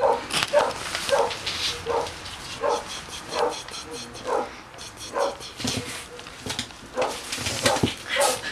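Small terrier making a steady run of short whines, about one every three quarters of a second.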